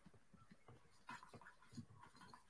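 Near silence: room tone, with a couple of very faint brief sounds.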